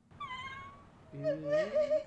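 A woman crying: a short high-pitched whimper, then a longer wailing sob that rises in pitch.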